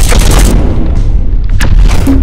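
Loud cinematic boom sound effects: a long rushing blast in the first half-second, then two sharp hits near the end, all over a continuous deep rumble.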